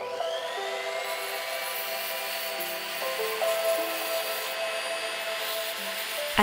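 Rotary tool with a tiny bristle brush attachment spinning up with a rising whine and then running steadily, scrubbing inside a silver ring's bezel, over background music.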